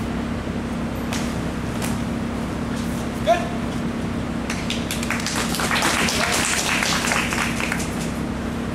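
Sparring bout with long practice spears: a short sharp cry a bit over three seconds in, then from about five seconds a rapid flurry of clacks, knocks and scuffling as the fighters close in, over a steady low hum.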